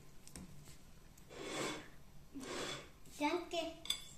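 Two soft, airy slurps from a mug of hot chocolate being sipped, then a brief high child's voice near the end.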